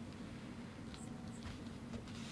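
Quiet room tone with a steady low hum, and a few faint rustles and clicks of paper being handled at a desk.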